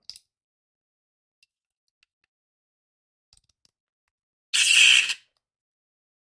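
A battery being fitted into a Proffie lightsaber's tight resin chassis: a few faint clicks, then one loud, squeaky sound lasting under a second, about four and a half seconds in.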